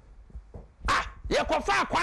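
Speech only: after a short pause, a man's voice starts again loudly and emphatically, in shouted bursts.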